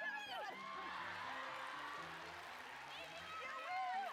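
Studio audience shrieking and laughing over upbeat background music with a steady repeating bass line; the crowd noise swells about a second in and the shrieks return near the end.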